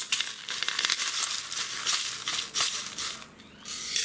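Steel shot tumbling media and coins pouring out of a rock tumbler barrel into a plastic strainer with the soapy wash water: a dense metallic rattle of many small clicks that eases off about three seconds in.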